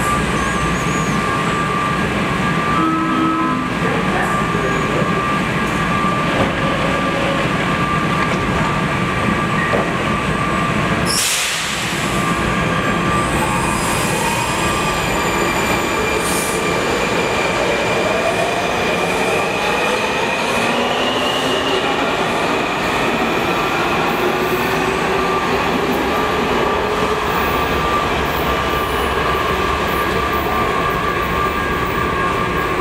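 Washington Metro Breda 2000-series subway train standing at the platform with a steady whine, then pulling out. A short hiss comes about eleven seconds in, then the traction motors whine rising in pitch as the train accelerates away over the rails.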